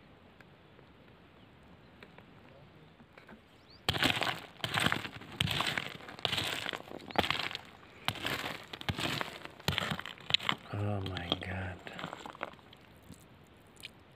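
A small rock pick digs and scrapes into loose gravelly soil in a run of irregular scraping strokes, one or two a second, starting about four seconds in after a quiet spell. A short hummed or voiced sound follows near the end.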